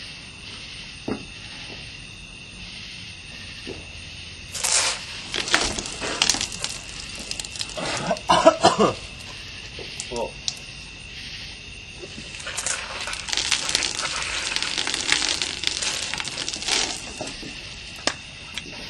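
A man's mouth noises as he gulps Diet Coke on top of a mouthful of chewed mint Mentos: gulps and sputtering from about four seconds in. Then, from about twelve seconds in, a sustained frothing, sputtering spray as the foam erupts from his mouth for about five seconds.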